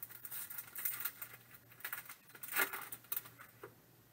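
Clear plastic trading card pack wrapper being torn open and crinkled by hand, a run of irregular crackles that is loudest about two and a half seconds in, with the cards being pulled out and handled.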